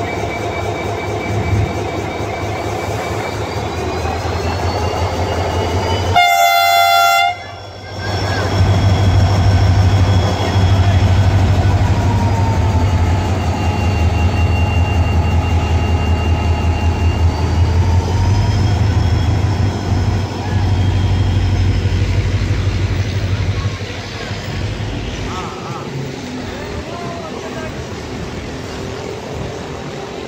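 HGMU-30 diesel-electric locomotive pulling a departing express train past, its engine running loud with a deep throb and a whine that rises and falls. It gives one short horn blast about six seconds in. After about 24 s the engine sound fades as the passenger coaches roll by.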